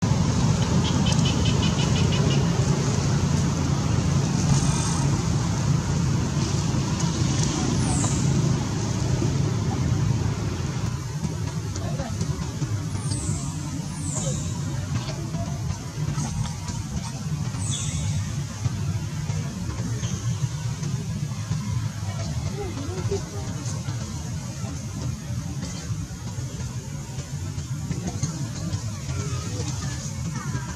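Outdoor background of a steady low rumble like distant road traffic, louder in the first ten seconds, with a few short high falling chirps scattered through the middle.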